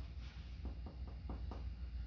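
Finger-on-finger percussion of the front of the chest: a quick run of soft taps, about five a second. Each tap gives the resonant note of healthy, air-filled lung.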